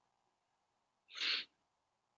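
A single short breathy sound from a person, a little over a second in, with near silence around it.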